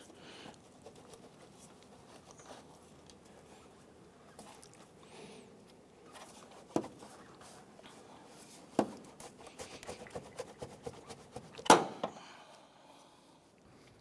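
Light clicks and knocks of hand tools and parts being handled in a car's engine bay: single sharp knocks about seven and nine seconds in, a run of small clicks after, and the loudest knock near the end.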